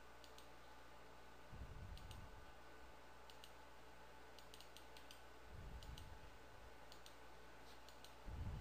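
Faint computer mouse button clicks, in quick pairs and short runs, several times over. There are two low, dull rumbles, about one and a half seconds in and again a little past five seconds.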